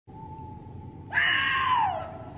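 A person screaming: one long, loud, high wail that slides down in pitch, starting about a second in. Before it there is only a faint steady high tone.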